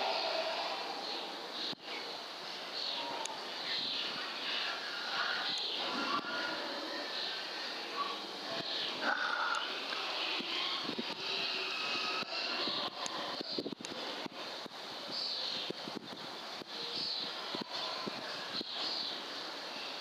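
Outdoor ambience heard through a rifle scope's built-in microphone: a steady hiss with many small birds chirping throughout, and a few faint clicks.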